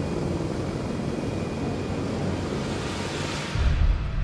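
Outboard motor of an inflatable boat running at speed, with water rushing and spraying off the hull. Near the end a deep bass note of music comes in.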